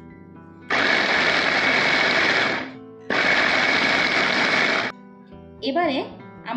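Electric mini food chopper running in two bursts of about two seconds each, with a short pause between, chopping carrots and green vegetables.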